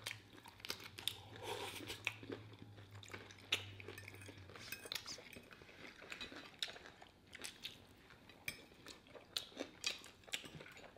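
Close-miked eating of pizza with a crisp crust: faint crunching bites and chewing, with forks clicking and scraping in aluminium foil trays in scattered short ticks.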